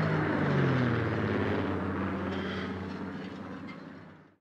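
A motor's steady droning hum whose pitch slides down early on, as a passing engine does, then fades away gradually toward the end.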